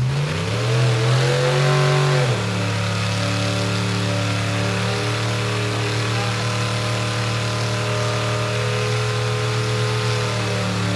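Rock bouncer buggy's engine revving up over the first two seconds, then held at a steady high pitch at full throttle while its tires spin and smoke on the rock, losing traction on the climb.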